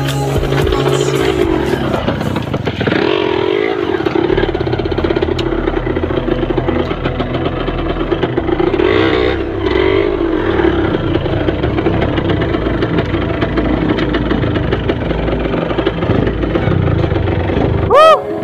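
Motorcycle engine running steadily at low speed while being ridden.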